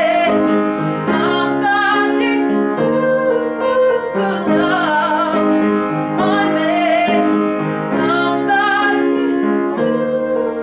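A woman sings solo while accompanying herself on piano. Her voice holds long, wavering notes over sustained chords.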